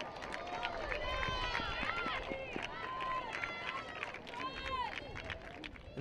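Faint overlapping shouts and cheers from several voices celebrating a goal.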